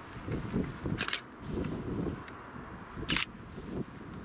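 Wind buffeting the microphone in uneven gusts, with two short sharp clicks about two seconds apart.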